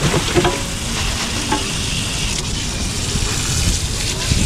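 Tap water running into a stainless-steel sink and splashing over a pile of prawns, a steady hissing splatter. A plastic bag crinkles in the first moment.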